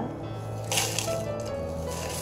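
Potassium chloride (KCl) fertiliser granules poured from a plastic cup through a plastic funnel into a plastic bottle, a short hissing rush about a second in and a smaller one near the end. Steady background music plays underneath.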